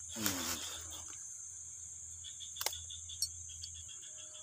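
Steady high-pitched drone of insects. A short voice sound comes about a quarter second in, and a single sharp click comes a little past halfway.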